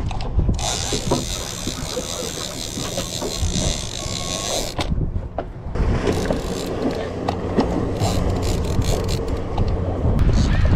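Shimano TLD 2-Speed lever-drag reel under load from a hooked fish: a steady high-pitched drag buzz for about four seconds as line pulls off the spool. After a short pause the reel is cranked, with small mechanical clicks from its gears.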